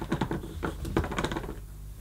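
Plastic hose cuff of an Electrolux 305 cylinder vacuum cleaner clicking and rattling in the machine's inlet as it is wiggled and twisted, a quick run of small clicks thinning toward the end. The cuff sits loose because the rubber seal on the hose end is cracked and broken.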